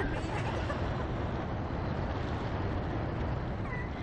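Wind buffeting the ride-mounted microphone as the Slingshot capsule swings high in the air, a steady rushing rumble, with a short high laugh from a rider near the end.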